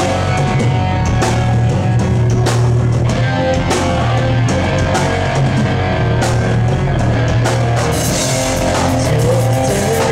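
Live rock band playing loud and steady: electric guitars over a drum kit, with regular drum hits.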